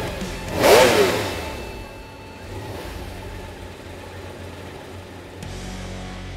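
A car engine sweeps past loudly about a second in, its pitch falling, over low, steady background music.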